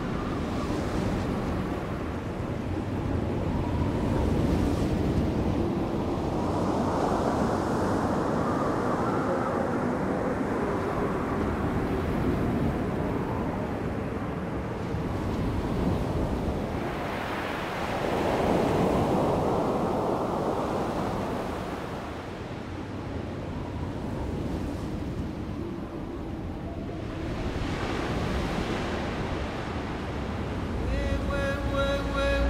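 Sea surf washing onto a sandy beach, with wind. It swells and falls back every several seconds as the waves come in, the strongest surge a little past halfway.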